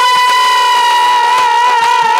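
A male Baul folk singer holds one long, high sung note, wavering slightly, over faint light percussion.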